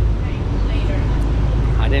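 A bus's engine and running gear heard from inside the passenger cabin: a loud, steady low drone.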